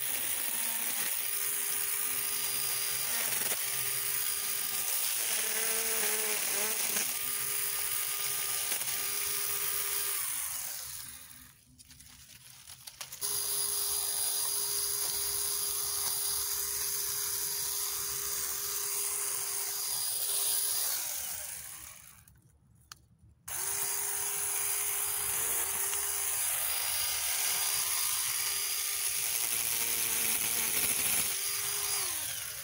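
Battery-powered mini chainsaw running with a steady whine in a series of bursts as it cuts through thin shrub stems, its chain left untightened. It stops briefly several times early on and twice for a couple of seconds, once about a third of the way through and once about three quarters of the way through.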